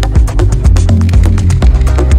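Melodic techno: a deep, sustained bass line and held synth tones under a steady beat of rapid hi-hat ticks.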